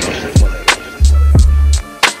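Hip hop beat with no vocal: deep kick drums that drop in pitch, a long deep bass note held from about a second in, and sharp drum hits over them.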